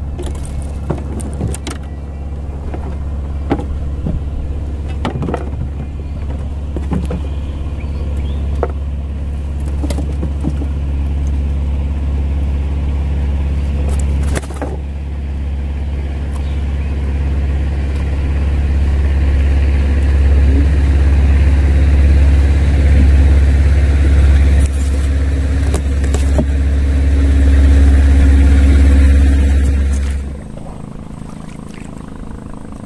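A low, steady engine drone that slowly grows louder and stops abruptly at the end, with scattered light knocks and clicks in the first half.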